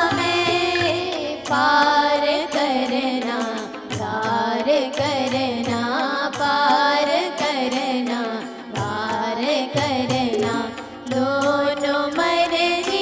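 Women singing a Hindu devotional bhajan to electronic keyboard and harmonium, with tabla keeping a steady beat. The singing pauses briefly between phrases.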